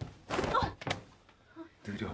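A young woman's short voiced grunt, then a single sharp thud as her swing at a man's face is blocked in a scuffle.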